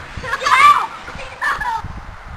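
A child's high-pitched shouts during play: two short yells, the first about half a second in and a shorter one about a second and a half in.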